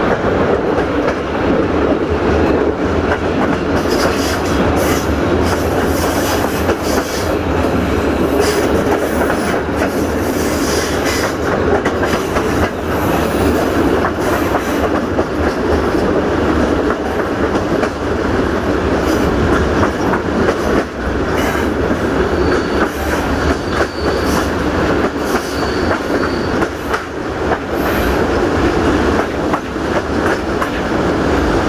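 Passenger coach wheels running over the rails, heard through an open window: a steady loud rumble with rapid clicks over the rail joints. Near the end, a faint high wheel squeal comes and goes as the train takes a curve.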